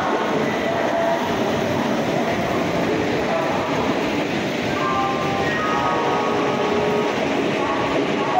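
Express train coaches rolling along a station platform: a steady rumble of wheels on rail, with people's voices mixed in.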